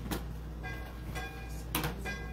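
A handheld microphone being handled and set down on a wooden lectern: several knocks and rubbing noises picked up directly by the mic, the loudest near the end.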